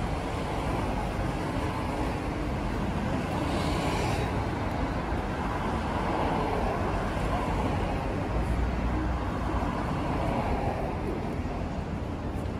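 Traffic noise from cars passing on a city street: a steady wash of road noise that swells now and then as vehicles go by.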